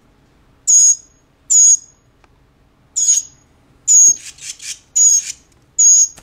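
Young hand-reared songbird begging for food: short, high-pitched, loud calls repeated about once a second, six in all, with fainter calls between them in the second half.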